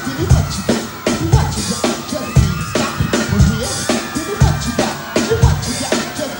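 A live drum kit, a Yamaha, playing a steady groove: regular kick-drum strokes with snare and cymbal hits, part of a band performance.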